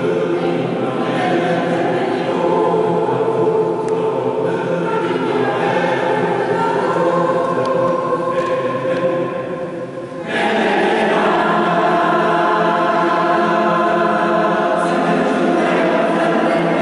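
Mixed choir of men's and women's voices singing sustained chords. The sound thins and softens briefly, then the full choir comes back in on a new phrase about ten seconds in.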